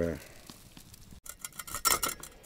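Hot, freshly smoked pork fat (salo) crackling and sizzling in irregular clicks and hiss. It starts about a second in and is loudest near the end.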